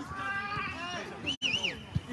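Players' voices calling across an outdoor soccer pitch. A high, wavering cry comes about a second and a half in, and a short thump right at the end.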